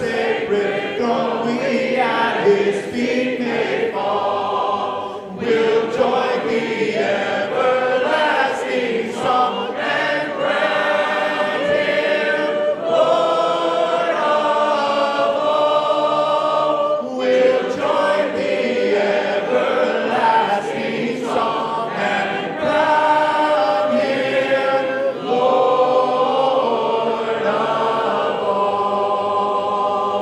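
A large congregation singing a hymn a cappella, many voices together in harmony. There are short breaks between phrases.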